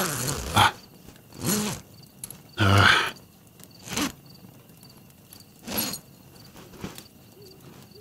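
A man's voice giving several short grunts and breaths of effort, with brief rustles between them, over a faint steady chirping of crickets.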